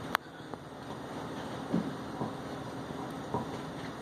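Steady low room noise in a pause, broken by one sharp click just after the start and a few faint soft sounds.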